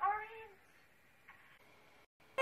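A woman's drawn-out, high-pitched vocal sound that slides in pitch and stops about half a second in. Near silence follows.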